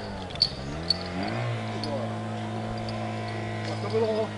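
Portable fire pump engine running steadily at high revs, its pitch stepping up slightly about a second and a half in, while it feeds the attack hose lines.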